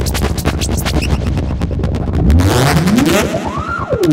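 Analog synthesizer, a VCO through a Polivoks filter, playing rapid clicking pulses over a low buzz; from about halfway a tone sweeps steeply upward in pitch as a knob is turned, peaking near the end.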